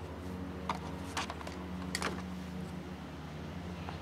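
Plastic fuel tubing and a squeeze bottle being handled while the tank of a Cox .049 glow engine is filled, giving a few short squeaks and clicks over a steady low hum. The engine is not running.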